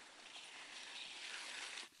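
Mountain bike tyres rolling along a muddy, leaf-covered forest trail: a faint, even hiss that cuts off near the end.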